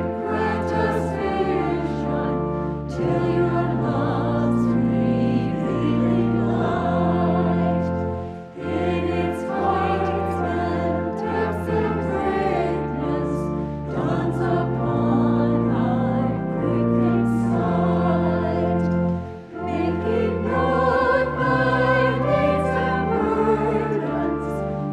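Small mixed church choir singing, with two brief breaks between phrases.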